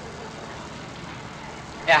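Steady hiss and background noise of an old 1946 courtroom sound recording, with no distinct events. A man starts speaking German just before the end.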